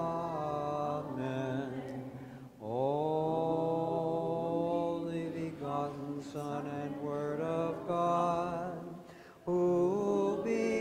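A man's voice chanting a hymn of the Byzantine Divine Liturgy in long held notes with slow glides between them. It pauses for breath briefly about two and a half seconds in and again just before the end.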